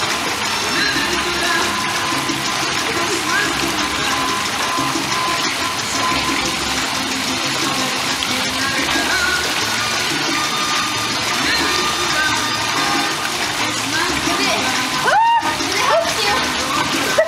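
Swimming-pool water sloshing and lapping as a swimmer paddles along on a foam noodle, a steady wash of water noise. Music and indistinct voices play faintly underneath.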